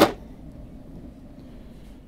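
A single short knock as a brass clock and tools are handled on a table, right at the start, followed by low steady background.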